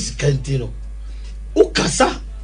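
A man speaking in short phrases, then a sharp, short noisy burst about a second and a half in, like a sneeze or a hard breath, over a steady low hum.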